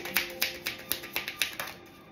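A deck of cards being shuffled by hand, the cards clicking against each other about four times a second until about one and a half seconds in. Faint background music with held tones underneath.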